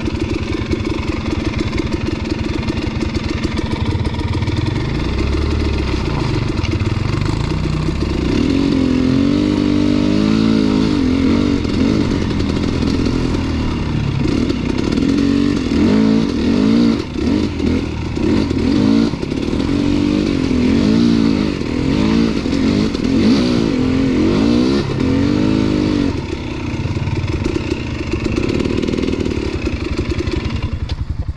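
KTM dirt bike engine ridden slowly over a rocky trail: running steadily at first, then revving up and down in repeated throttle blips from about eight seconds in, settling back to steady running near the end.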